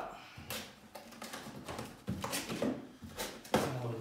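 A large cardboard box being opened by hand: the lid scraping and rustling as it is lifted off, with a few sharp knocks of cardboard.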